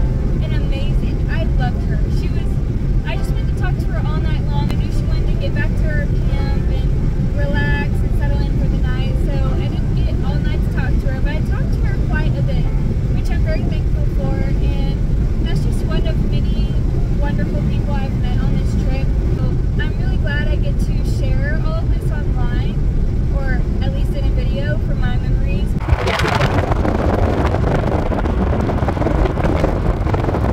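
Steady road and engine rumble inside a moving car's cabin. About 26 seconds in it gives way suddenly to wind buffeting the microphone outdoors.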